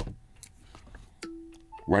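A MagSafe charger puck snapping magnetically onto the back of a cased iPhone 15 Pro Max with a sharp click. A little over a second later the phone plays its short charging chime, a lower tone held briefly, then a higher one.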